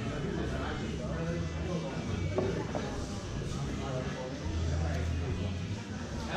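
Indistinct talking from people around the mat, over background music.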